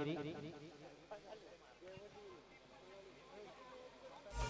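A man's speech fading out at the start, then faint, distant voices calling in the background.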